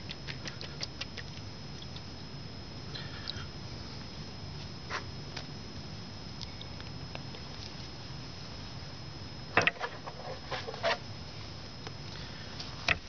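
Small scratchy clicks and light taps of fingers working in a shallow aluminium tray of water, with a cluster of louder sharp clicks and knocks near the end, over a faint steady background hum with a thin high whine.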